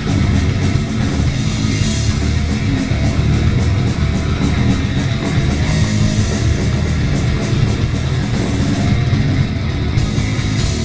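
Grindcore band playing live at full volume: heavily distorted guitar and bass over fast, relentless drumming with cymbals.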